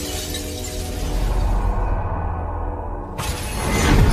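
Cinematic glass-shattering sound effect as space splinters into shards, with high glittering fragments fading away over held music chords. About three seconds in, a sudden loud rushing swell sweeps in and builds to the end.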